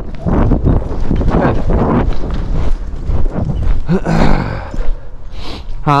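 Horses cantering on soft arena dirt: a steady rhythm of dull hoofbeats.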